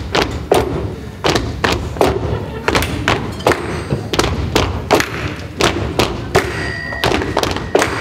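Walking sticks and crutches knocked on a wooden floor in a steady rhythm, about two to three knocks a second.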